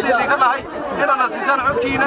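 A man's speech amplified through a handheld megaphone.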